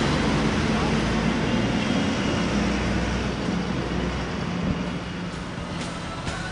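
Street traffic dominated by a double-decker bus's diesel engine running close by, a low steady hum that is loudest at first and eases off as the bus pulls away.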